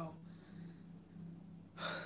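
A woman's sharp intake of breath near the end, over a steady low hum.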